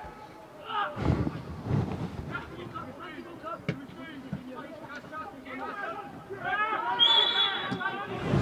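Football players' shouts and calls across an open pitch, with an occasional sharp kick of the ball; the voices grow louder near the end as a player goes down.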